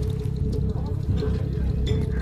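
Film soundtrack: a steady low rumble under a held tone, with faint voices.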